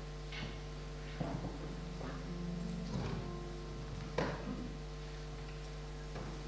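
A few soft knocks and clatters of instruments being picked up and readied, over a steady electrical hum; the loudest knock comes a little after four seconds in.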